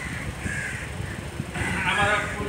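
A short, harsh animal call sounds during a pause in a man's lecturing, and his voice resumes near the end.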